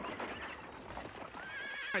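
Horse hooves clopping as a horse-drawn cart pulls up, then a horse whinnying near the end, its call rising in pitch.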